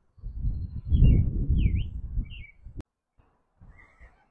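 Birds chirping a few short calls over a loud, uneven low rumble on the microphone; a single sharp click just before the three-second mark.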